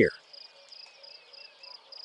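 The tail of a spoken word, then a faint high-pitched chirping pulse repeating about five times a second over a low hiss.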